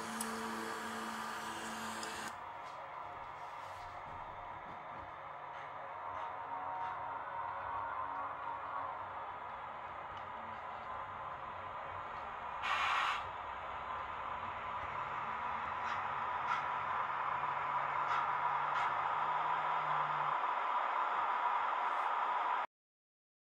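H0-scale model EU07 electric locomotive and train running along the track, a steady whirring of motor and wheels on rail that grows louder as it approaches, with a brief hiss about thirteen seconds in.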